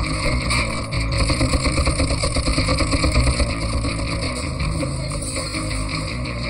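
Motor vehicle engines running, louder and more uneven between about one and three and a half seconds in.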